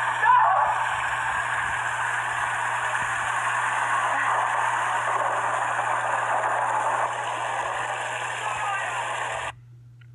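A steady rushing hiss at an even level, with faint voices underneath, cutting off suddenly about half a second before the end.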